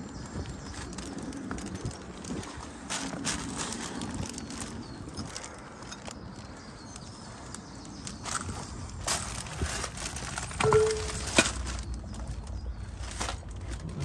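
Footsteps crunching over loose stone and brick rubble, with scattered clicks and knocks and one sharper knock about two-thirds of the way through.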